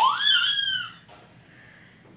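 A high-pitched squeal from a voice, rising and then falling, about a second long.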